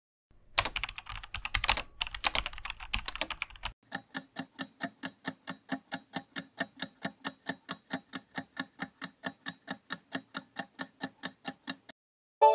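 Keyboard-typing sound effect of rapid clicks for about three and a half seconds, then a steady clock-like ticking of about five ticks a second marking a countdown timer.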